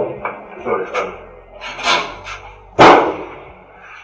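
A few knocks and clatters, then one loud bang with a short ring about three seconds in: a steel door being banged shut.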